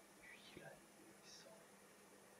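Near silence with faint whispering: a few short, hissy breaths of a whispered voice over a low steady hum.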